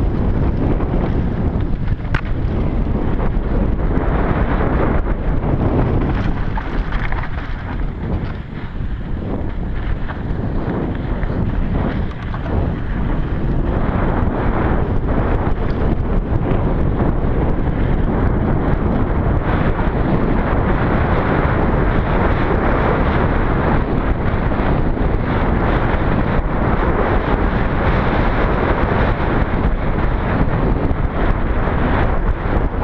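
Wind buffeting the action camera's microphone as a mountain bike is ridden fast on a dirt trail, with tyre noise and scattered clicks and rattles from the bike over rough ground.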